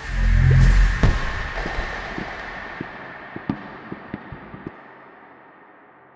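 A single firework boom, followed by a fading hiss with scattered sharp crackles that die away over the next few seconds.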